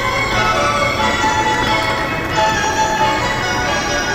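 JR station departure melody (hassha melody) played over the platform speakers: a bell-like chime tune that signals the train's doors are about to close. Its short phrase starts over about two and a half seconds in.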